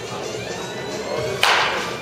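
A baseball bat strikes a pitched ball once, a single sharp crack about one and a half seconds in that rings briefly, over background music.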